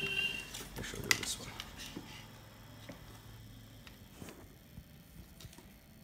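Handling noise: a few sharp knocks and rustles as a pressure washer's hard plastic parts, among them the spray lance, are lifted out of a cardboard box, the loudest knock about a second in. A low steady hum runs under the first half.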